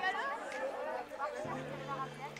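Indistinct chatter of several voices, no words clear.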